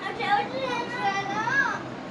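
A young girl's voice: one long drawn-out wordless sound, high-pitched, that swells and rises near the end.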